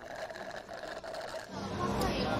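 A long, rapid, rattling slurp through a drinking straw from a glass cocktail.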